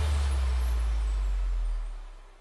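Red Arrows' BAE Hawk jets flying past in formation: a deep, steady rumble with a hiss that dies away near the end.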